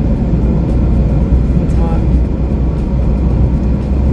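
Steady low rumble of a car heard from inside its cabin, the engine running.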